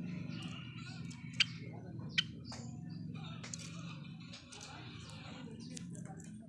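Caged Java sparrows chirping: a few short, sharp chip notes, the two loudest about one and a half and two seconds in, over a low steady background murmur.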